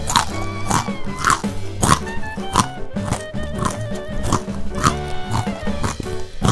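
Background music with repeated crunching bites of food, roughly every half second, as an eating sound effect.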